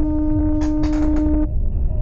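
Car horn sounding one long, steady single-tone blast as a warning to another driver, cutting off about one and a half seconds in, over low road and engine rumble.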